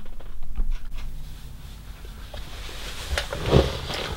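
Close handling noise as an arm reaches past the camera: a low rumble with scattered light clicks, a sharper click a little after three seconds and a dull knock just after it.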